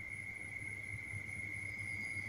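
Faint background with no speech: a steady high-pitched whine over a low hum.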